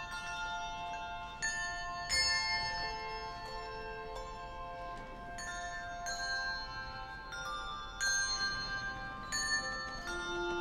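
Handbell choir ringing a slow piece: struck bell notes and chords, a new one about every second, each ringing on and overlapping the next.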